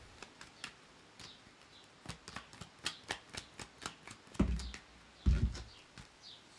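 Tarot cards being shuffled by hand: a run of quick light clicks and flicks, thickest in the middle, with two dull thumps about a second apart near the end.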